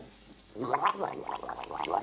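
A man's throat gurgling in short, irregular bursts, starting about half a second in, as he regurgitates swallowed sugar and water back up from his stomach.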